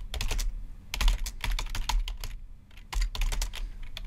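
Typing on a computer keyboard: quick runs of keystrokes, a short pause a little past halfway, then more keystrokes.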